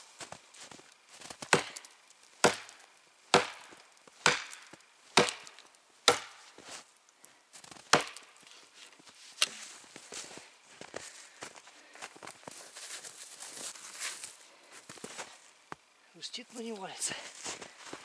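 Heavy forged felling axe, the 1850 g Maral 2 on a 75 cm handle, chopping into a standing tree trunk: about seven hard blows roughly a second apart, then a few lighter knocks. The trunk is cut most of the way through and cracking but still not falling.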